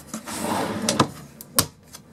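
Caravan kitchen cupboard being handled and shut: a sliding rub for about a second, two clicks, then a sharp knock as the door closes.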